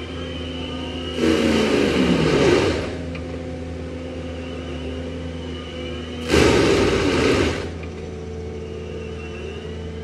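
Compact track loader with a forestry mulcher head: the diesel engine and spinning mulcher drum run steadily, and twice, about a second in and again about six seconds in, the drum bites into a tree stump with a loud grinding burst lasting a second or so. During the first bite the pitch drops as the machine comes under load.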